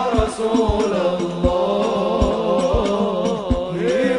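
Live sholawat: a male lead vocalist sings an Arabic devotional song in long, ornamented lines over a hadrah ensemble of frame drums, which keep up deep strikes about twice a second. Near the end the voice slides upward into a new phrase.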